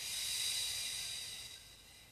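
A woman's long audible exhale during a slow, conscious yoga breath, a soft airy rush that fades out over about a second and a half.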